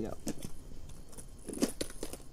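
Clear plastic tackle trays being handled and pulled out of a soft tackle bag, with lures rattling and clicking inside them in short, scattered bursts.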